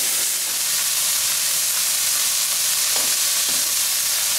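Sliced bell peppers and leek sizzling steadily in olive oil in a hot wok, stirred with a wooden spoon.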